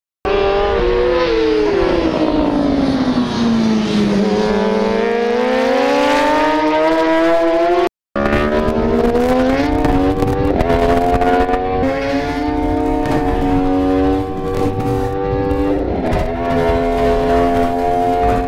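Racing superbike engines: the engine note falls as the bikes brake into a corner, then climbs as they accelerate out. After a brief drop-out about eight seconds in, an engine holds a fairly steady note with small rises and dips.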